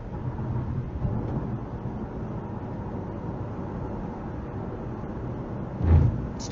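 Steady low road and engine rumble of a moving car, heard from inside the cabin by a dashcam microphone. A brief, loud low thump comes just before the end.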